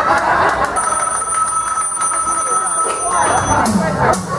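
A telephone ringing on the playback soundtrack: one steady ring lasting about two and a half seconds, starting just under a second in. Voices come before and after it.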